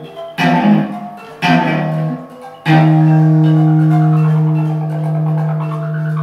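Live improvised experimental music on amplified plucked strings: three notes struck about a second apart, the third ringing on as a long sustained low note.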